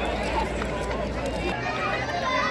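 Outdoor crowd chatter: many voices talking at once, with no single clear speaker. A low rumble under the voices stops abruptly about one and a half seconds in, where the sound cuts to another shot.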